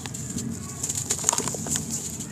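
A dry sand-and-cement block crumbling as hands squeeze it, with small crunches and gritty crackles as bits fall away. A bird coos in the background.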